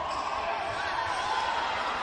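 Steady crowd noise in a basketball arena during live play, with faint sounds from the court.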